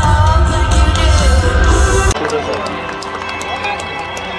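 Live rock band playing loud through an arena PA, a woman holding a sung note over heavy bass and drums, cut off suddenly about two seconds in. It is followed by arena crowd chatter with scattered claps.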